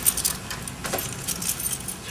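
Loose metal screws clinking and jingling irregularly as they are rummaged through.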